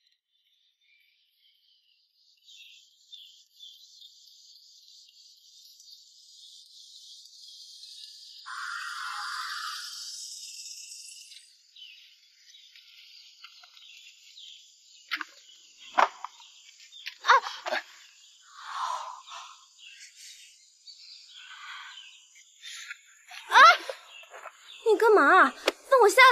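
Insects chirring steadily in the background, with a few sharp clicks and knocks from about fifteen seconds in. Near the end comes a woman's short, loud cry.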